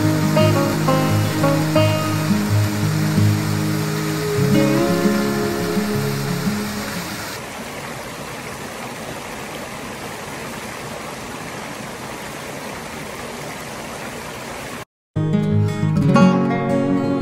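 Acoustic guitar music over the steady rush of a waterfall and rocky mountain stream. About halfway through the guitar stops, leaving only the rushing water. Just before the end there is a brief dropout to silence, then the guitar comes back.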